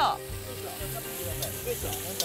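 Wood fire crackling under a cast-iron Dutch oven: a steady hiss with a few sharp pops.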